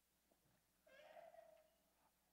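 Near silence in a large room, broken about a second in by one faint, short high-pitched sound whose pitch falls slightly.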